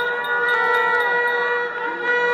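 A steady, unchanging pitched tone with overtones, held throughout, with faint bending sounds beneath it.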